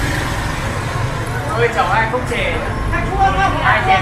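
Steady street traffic: a low, continuous hum of motorbike and car engines, with voices over it about halfway through and near the end.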